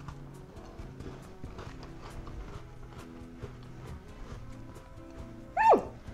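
Background music with a light, stepping melody and soft ticking rhythm. Near the end, a loud, short 'mm' from a woman tasting food, falling in pitch.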